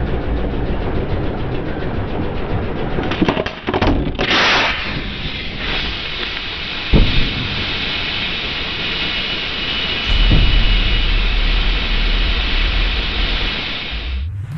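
Car tyre pressing down onto a red-hot steel bolt, the rubber burning and smoking: a loud steady hiss with several sharp thuds, then a deep low rumble in the last few seconds, the sound dulled as if slowed down.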